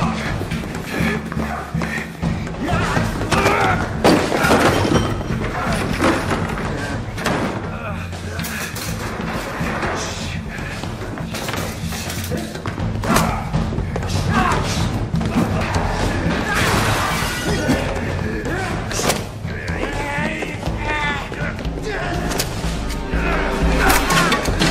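Film fight-scene soundtrack: score music runs under repeated blows and body-impact thuds, glass shattering, and men grunting and shouting.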